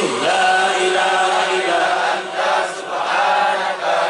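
Islamic dhikr chanting through a microphone and PA: a male voice leads in long held notes that slide up and down in pitch, a little softer about two seconds in and again just before the end.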